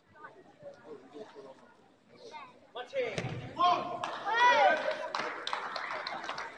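Voices in a large, echoing sports hall. They are quiet at first, then about three seconds in they turn to loud shouting, with one high yell that rises and falls. Several sharp thuds come among the shouts.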